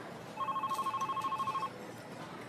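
Phone ringing for an incoming call: an electronic trill of two rapidly alternating tones, one ring of just over a second starting about half a second in.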